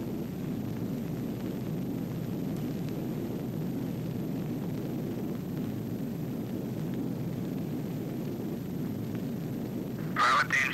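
Steady low drone of a propeller bomber's piston engines heard inside the aircraft in flight, an even rumble with no change in pitch or level.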